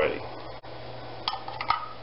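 A few light clinks of kitchenware being handled, about a second and a half in, over a steady low hum.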